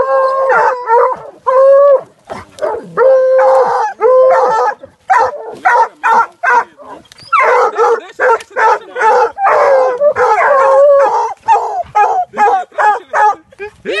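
Hunting dogs baying at a collared peccary holed up in a burrow: a rapid run of short barks mixed with drawn-out, howling bays, loud and continuous.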